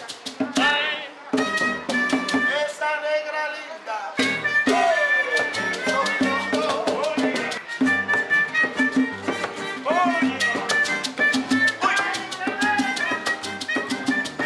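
Cuban son band playing: acoustic guitar, double bass, bongos and shaken maracas keep a steady dance rhythm, with a voice singing over it.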